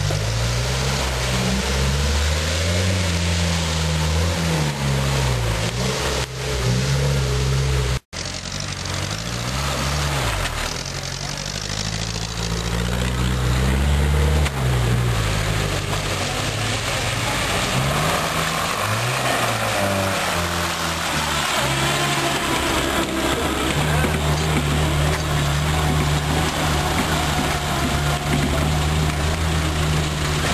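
Series Land Rover engine under load, climbing through muddy ruts, its revs rising and falling over and over. The sound drops out for a moment about eight seconds in.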